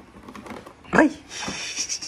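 A short, loud yelp-like cry with a bending pitch about a second in, followed by a thinner, higher whine, over faint clicks as the latches of a plastic tool case are worked open.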